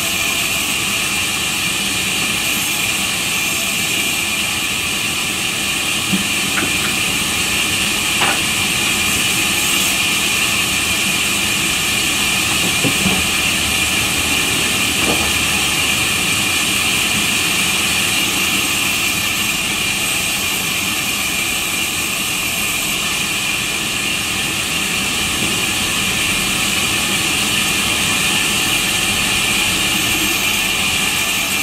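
Large sawmill band saw running steadily while planks are fed through the blade: a continuous loud, high whine with machine noise underneath. A few faint knocks of wood being handled come now and then.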